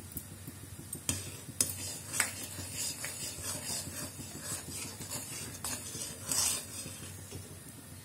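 A flat spatula stirring thickening milk in a metal kadhai, scraping across the pan in short strokes about every half second, which trail off near the end. The stirring is steady because the milk is being reduced for barfi.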